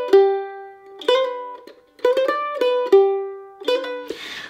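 F-style mandolin played solo, picking the same short jig phrase over and over: a quick run of sixteenth notes into eighths, ending each time on a longer note left to ring and fade. One phrase ends as the sound begins, another is played in full, and a third starts near the end.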